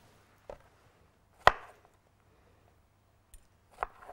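Kitchen knife cutting strawberries against a cutting board: a faint tap, one sharp chop about a second and a half in, then two lighter taps near the end.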